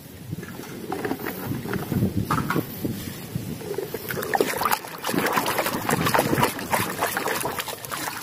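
Water sloshing and splashing in a basin as a hand scrubs muddy plastic toy vehicles, with frequent plastic clicks and knocks as the toys are handled; it gets louder about a second in.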